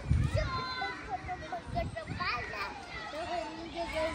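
Young children's high voices, vocalizing in short sing-song notes while at play.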